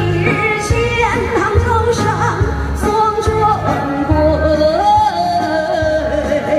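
A woman singing a slow, gliding melody into a handheld microphone, amplified, over accompanying music with a steady bass beat.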